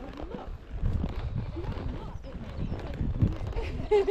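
Horses walking on a dirt and gravel track, their hooves clip-clopping at an unhurried walk.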